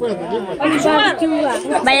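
Speech only: several people chattering and talking over one another in Spanish.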